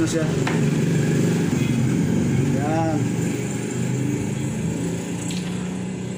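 A steady low mechanical drone, loud and unchanging, with one short spoken word in the middle.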